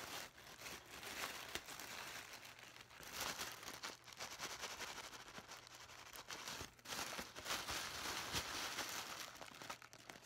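Crinkling and rustling of a white package wrapping being handled and unwrapped by hand, in irregular bursts.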